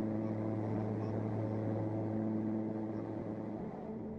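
Aircraft engine and propeller drone heard from inside the cabin: a steady, even-pitched hum that fades a little near the end.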